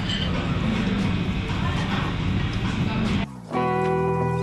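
Busy restaurant sound with voices and a steady low hum. About three seconds in it cuts off and edited-in background music with held, plucked-sounding notes begins.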